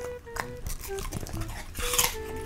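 A dog's mouth sounds, close to the microphone: a few wet clicks as she licks her lips, then near the end a crisp crunch as she bites into a piece of green vegetable. Light background music with sustained tones plays throughout.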